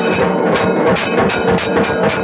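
Metal temple bells rung rapidly and steadily during a Hindu deeparadhana (lamp offering), about five clangs a second, each ring running into the next.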